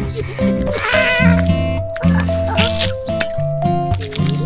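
Playful cartoon background music with sustained notes over a steady bass line; about a second in, a short wavering high squeak sounds over it.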